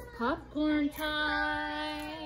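A high singing voice: a quick upward slide, a short held note, then a long steady note from about a second in.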